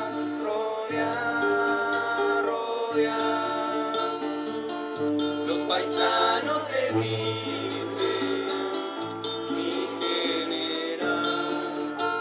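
Live folk song played on several acoustic guitars, strummed steadily, with young voices singing held notes over them.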